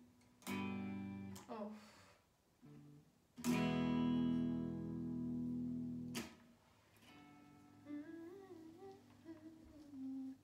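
Semi-hollow electric guitar strummed: a few short chords in the first two seconds, then a loud chord left ringing for nearly three seconds before it is suddenly damped. Near the end a quieter chord rings while a voice hums a wandering tune over it.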